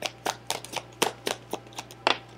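Tarot deck being shuffled by hand: a quick, regular run of card slaps, about four a second.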